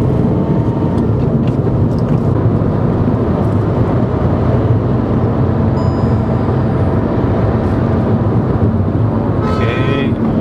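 Steady road and engine noise heard inside a car's cabin while cruising at highway speed: a continuous low hum over tyre rumble.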